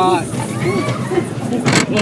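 Young men's voices crying out in short "oh" exclamations of fright and excitement while riding an amusement ride, with a brief rush of noise near the end.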